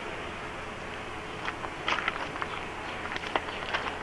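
Steady background hiss with a faint steady hum, and scattered small clicks and ticks through the second half.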